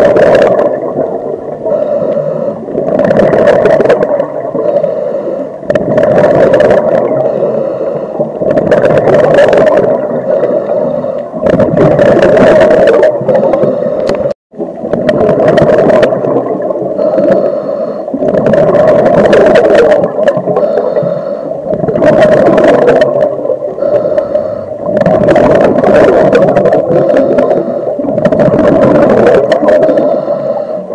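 A diver breathing through a scuba regulator underwater: a rush of breath and bubbles every two to three seconds, with a brief cut-out about halfway through.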